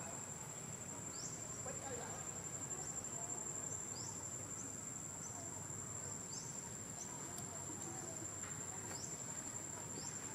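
Insects keeping up a steady, high-pitched whine, with short rising chirps repeating about once a second over a low background hum.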